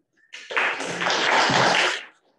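Audience applauding. The clapping starts about a third of a second in, fills out quickly and cuts off abruptly at the end.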